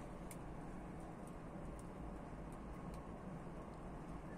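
Faint steady low background noise with a few scattered faint ticks.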